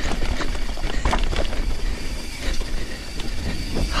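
Canyon Torque CF full-suspension mountain bike riding fast down dirt singletrack: a steady rumble of tyres over the ground with the chain and frame rattling and clicking over bumps.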